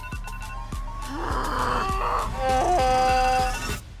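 Phone alarm playing a song with singing over a steady beat, cut off suddenly near the end as it is switched off.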